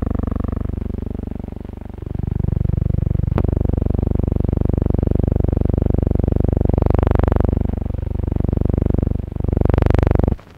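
A loud, steady low drone, with fainter wavering higher tones above it and a single sharp click about three and a half seconds in.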